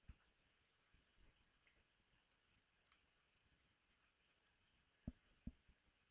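Near silence with faint, scattered clicks of a computer keyboard as text is typed, and two slightly stronger clicks about five seconds in.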